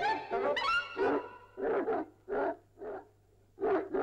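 A dog barking repeatedly, about seven short barks in quick succession, with brief quiet gaps between them.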